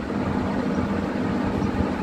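Steady low mechanical hum with an uneven rumble beneath it.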